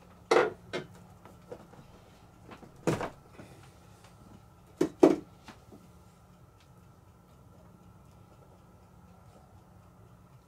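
Sharp clicks and knocks from hand tools and wiring being handled, over a faint steady hum. There is a knock just after the start, a lighter one soon after, another about three seconds in, and a close pair about five seconds in.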